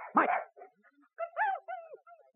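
A dog's single short whining yelp, about a second in, that rises briefly and then slides down in pitch.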